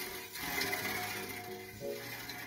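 Bicycle disc brake rotor spinning with the wheel, the brake pads rubbing against it: the caliper sits tight and the rotor is not perfectly true, with the outside pad dragging. Music plays underneath.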